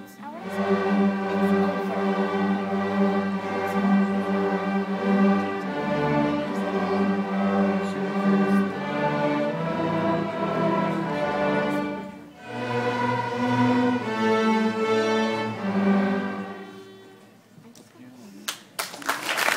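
A school string orchestra, cellos and double basses prominent, playing a slow, sustained piece. The music breaks briefly about twelve seconds in, then resumes and dies away near the end.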